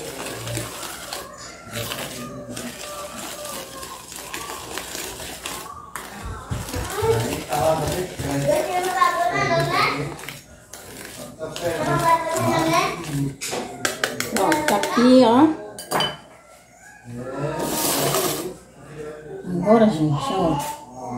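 Wire whisk beating cake batter in a plastic bowl, a quick scraping and clicking against the bowl, joined by background voices from about seven seconds in.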